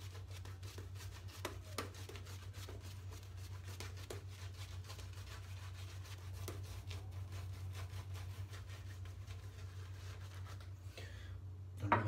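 Shaving brush swirling shaving-cream lather over a bald scalp: a fast, faint, scratchy rubbing full of small crackles, over a low steady hum.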